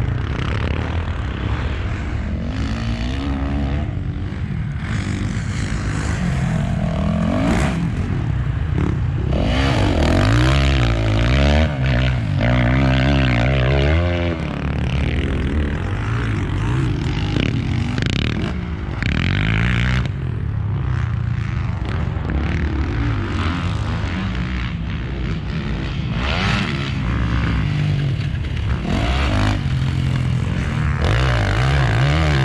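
Motocross bike engines revving on a dirt track, the engine note rising and falling repeatedly through throttle and gear changes, loudest about ten to fourteen seconds in.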